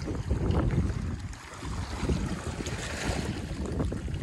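Small lake waves lapping and splashing against a grassy, muddy bank, with wind buffeting the microphone as an uneven low rumble.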